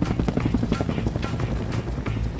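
Helicopter in flight, heard from inside the cabin: a steady low drone with the fast, regular chop of the rotor blades.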